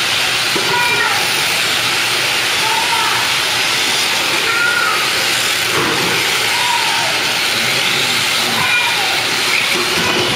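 Tamiya M-03 electric RC cars racing on a hard indoor floor: a steady loud hiss of motors and tyres, with short whining glides that rise and fall about once a second as the cars speed up, brake and corner.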